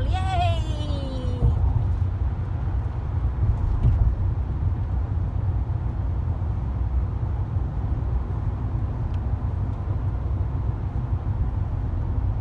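Steady low rumble of road and engine noise heard inside a car's cabin while cruising at freeway speed.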